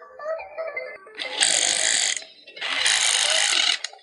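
Small toy claw machine's motor whirring in two runs of about a second each as the claw is moved and lowered, with music playing.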